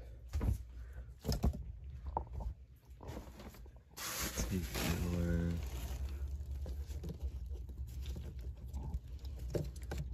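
Scattered knocks and rustling from handling at close range. About four seconds in, a steady low hum starts and runs on.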